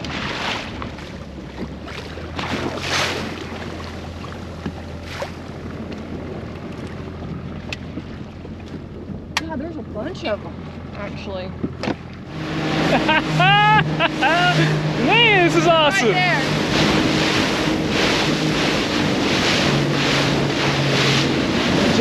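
Small boat's Evinrude outboard motor running slowly, with water slapping and wind on the microphone. About twelve seconds in it grows louder and the boat runs fast, the wake rushing, with excited voices calling out over it.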